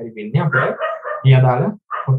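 A man's voice speaking in Sinhala, in short phrases with brief pauses.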